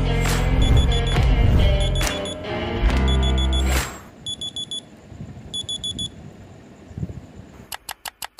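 Phone alarm beeping in quick groups of four, at first under bass-heavy music and then on its own once the music stops about four seconds in. A few sharp clicks near the end.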